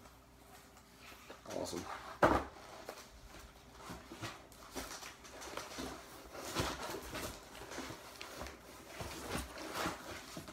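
Cardboard box flaps and record mailers rustling and scraping as vinyl records in their sleeves are pulled out and handled, with a sharp knock about two seconds in and a few softer knocks later.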